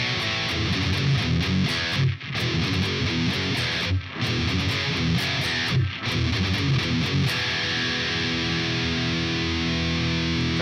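Distorted electric guitar playing a thrash riff of low E power chords with quick F sharp power chord hits, stopping short three times. From about seven seconds in, a low E power chord is left ringing out.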